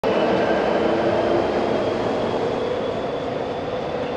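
Steady jet aircraft drone with several high whining tones over a noisy rush, slowly fading.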